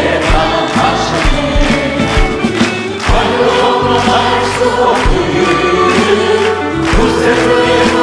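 A male lead vocalist sings a Korean gospel hymn through a microphone, with female backing vocals, over a band accompaniment with a steady drum beat.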